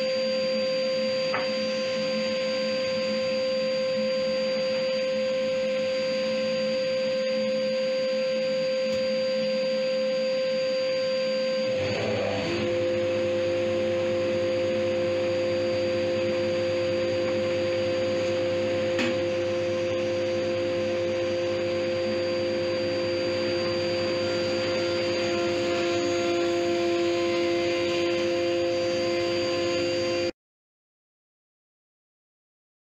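12-inch combination planer-thicknesser with a helical cutter head running in thickness-planing mode, a steady machine hum with its dust extraction running. About twelve seconds in the sound shifts and deepens, a lower tone and rumble joining, as a board is fed through the cutter head under load.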